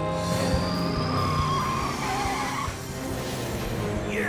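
Cartoon sound effect of a vehicle's tires squealing in a skid, a wavering squeal that swells about half a second in and fades by the middle, over background music.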